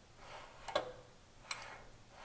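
A few faint, sharp clicks from a John Deere 140's original foot-pedal linkage pressing on a plastic electric-throttle pedal actuator as the pedal is pushed down.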